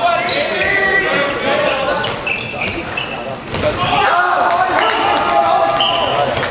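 Handball being played in a sports hall: players' voices shouting over short, high squeaks of shoes on the hall floor and the thud of the ball bouncing, all with hall echo.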